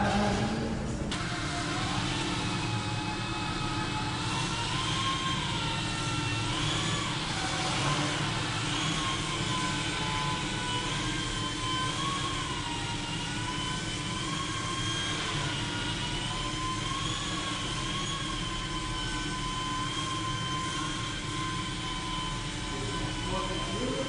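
A small radio-controlled helicopter in flight: a steady high whine from its motor and spinning rotors. The pitch rises and dips slightly now and then as the throttle and rotor speed change.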